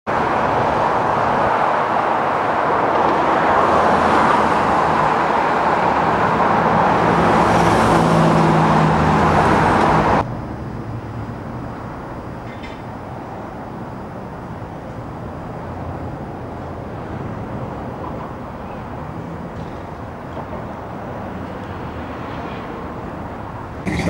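Road traffic noise, loud for about the first ten seconds with a vehicle engine rising near the end of that stretch, then cutting suddenly to a quieter, steady traffic background.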